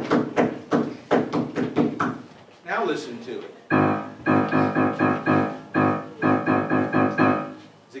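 Grand piano playing a single note struck over and over in a quick repeating rhythm, in groups with short breaks. This note-on-a-rhythm starts about four seconds in, after a run of sharp percussive taps.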